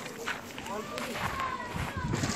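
Indistinct voices of people talking in the background outdoors.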